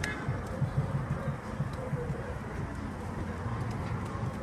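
Low, uneven rumble of handling noise on a handheld phone's microphone carried while walking, with faint voices.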